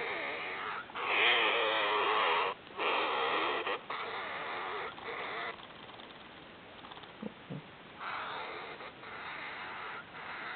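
A Gemmy dancing hamster toy's sound chip playing its "right about now" phrase dragged out into a low, spooky, distorted noise by its weak original batteries. It comes in several bursts, drops away about five and a half seconds in, and returns near the end.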